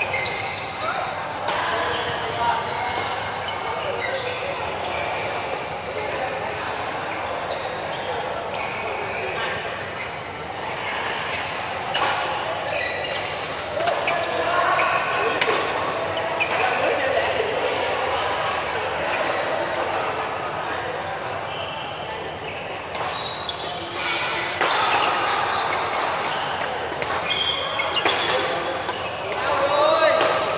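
Badminton rackets striking a shuttlecock in a rally, a string of sharp cracks at irregular intervals, with players' footwork on the court, in a large echoing hall.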